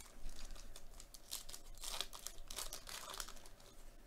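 Plastic-foil trading card pack wrapper crinkling in the hands and being torn open, in a run of irregular crackles that is busiest about the middle.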